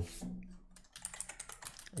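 Typing on a computer keyboard: a quick run of light keystroke clicks, coming thickest from about a second in.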